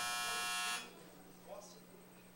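An electronic buzzer sounds one steady buzz lasting just under a second and then cuts off: the signal that a speaker's time at the podium has run out.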